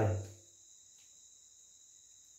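A steady, high-pitched background drone that does not change, heard once the tail of a man's spoken word dies away in the first half-second.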